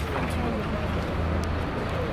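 Street ambience: a steady rumble of road traffic with indistinct voices of people talking.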